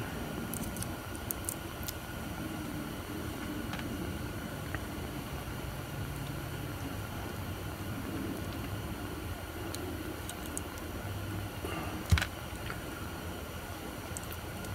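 Small resin castings and a flexible silicone mold being handled by hand: faint scattered ticks and one sharper tap about twelve seconds in, over a steady low room hum.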